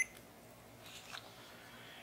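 A short electronic beep right at the start, typical of a digital multimeter's piezo beeper. Then low room tone with faint handling of the test leads about a second in.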